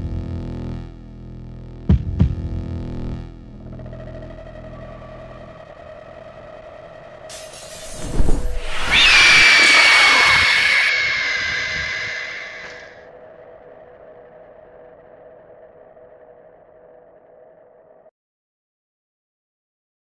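Dark trailer score: a sustained drone with heavy impacts about a second apart near the start, then a low boom. A loud, drawn-out high shriek from a fanged vampire woman follows, falling slightly in pitch, before the drone fades out to silence.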